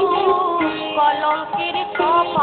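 Bengali devotional kirtan music: a continuous melody, sung with wavering ornaments, over accompaniment.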